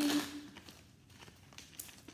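A deck of tarot cards being shuffled by hand: a brief papery rustle at the start, fading to faint taps and clicks of the cards.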